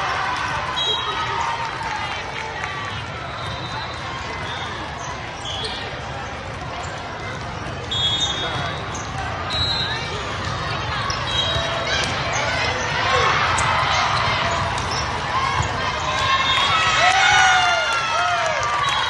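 Busy volleyball tournament hall: many overlapping voices of players and spectators, short sneaker squeaks on the court floor and ball contacts during a rally. The voices grow louder near the end.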